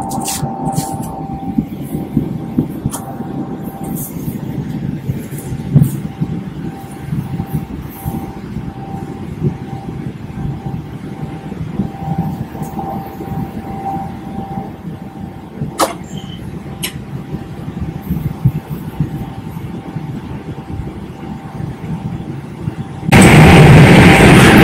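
Boeing 777-300ER cabin noise in cruise: a steady low rumble with a faint steady tone over it, and a couple of sharp clicks about two thirds of the way through. Loud music cuts in just before the end.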